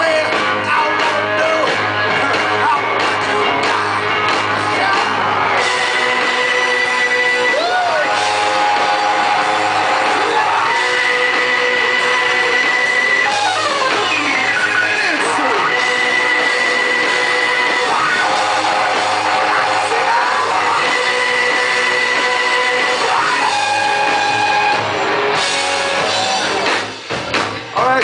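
Loud live rock-and-roll band playing an instrumental passage, with a run of long held high notes and swooping pitch bends over the full band. The sound dips briefly near the end.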